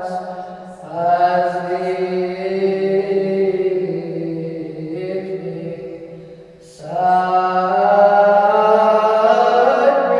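Byzantine liturgical chant: a chanter singing long, drawn-out phrases whose notes slide slowly between pitches, with short pauses for breath about a second in and about seven seconds in.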